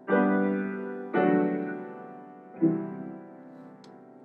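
Piano chords played slowly, three struck about a second and a half apart, each left to ring and fade: the quiet introduction to a slow ballad.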